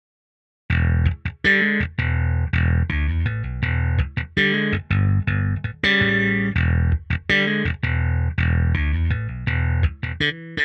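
Slapped electric bass line from a sampled J-style four-string bass with roundwound strings (Evolution Roundwound Bass), starting just under a second in. The notes are rapid and percussive, with a bright, crisp attack over a deep low end.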